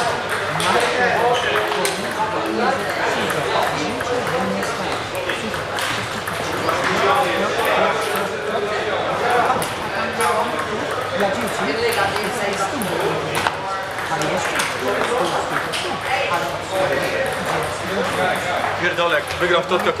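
Table tennis balls clicking off tables and bats in rallies at several tables at once, a steady scatter of sharp clicks throughout.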